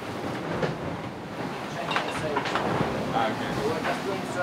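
Steady rushing and rumbling of an IMOCA racing yacht moving through the sea, heard inside its enclosed cockpit, with a few sharp knocks and rattles about halfway through.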